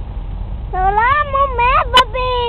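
A high-pitched voice cries out twice: a long call that bends up and down, then a shorter falling one. A sharp click comes between them, over a low rumble.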